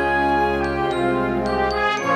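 Concert wind band playing sustained chords, with several bright, ringing metallic percussion strikes sounding over them.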